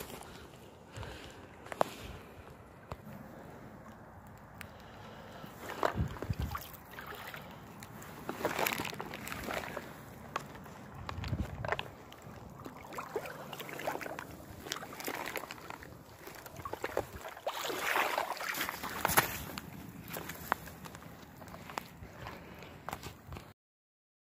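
Shallow river water sloshing irregularly around a steelhead held on a rope stringer at the water's edge, with scattered sharp clicks and knocks and a couple of louder swells. The sound cuts off suddenly just before the end.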